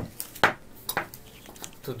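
Metal speargun shafts clinking as they are picked up and handled, with a sharp clink about half a second in and a lighter one near one second.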